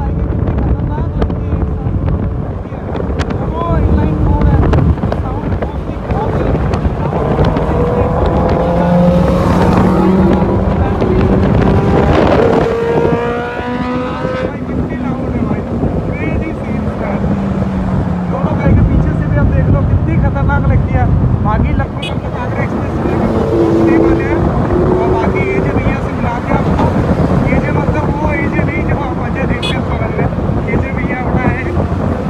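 Motorcycles riding at speed under heavy wind buffeting on the microphone. An engine note climbs in pitch for several seconds as a bike accelerates, then drops away about halfway through. A shorter rise in engine pitch comes again later.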